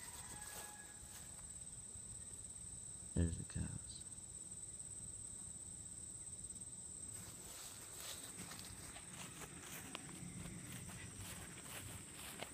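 Faint outdoor pasture ambience of someone walking through long grass, with a steady thin high whine throughout and one short low vocal sound about three seconds in.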